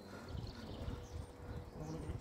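Quiet open-air background: a low, uneven rumble of wind on the microphone, with a few faint bird chirps and a faint steady hum.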